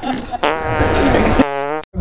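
Comic fart sound effect: a wavering blast of about a second, then a short steady note that cuts off suddenly.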